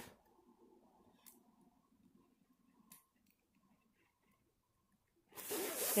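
Quiet room tone with a couple of faint ticks as a diamond-painting canvas is handled and laid down on a table, then a woman begins speaking near the end.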